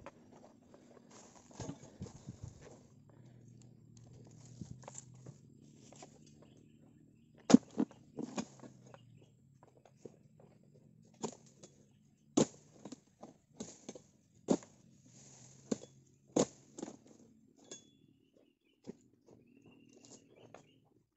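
Sharp chopping strikes of a dodos, a harvesting chisel on a long bamboo pole, cutting at an oil palm, about a dozen at irregular intervals about a second apart from around seven seconds in. Faint rustling comes before them.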